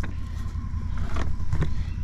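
Can-Am Defender side-by-side's engine running steadily as it drives along the trail, a low rumble.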